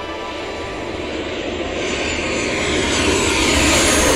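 Jet airliner climbing out overhead after takeoff, its engine noise swelling steadily louder, with a falling whoosh in pitch over the second half.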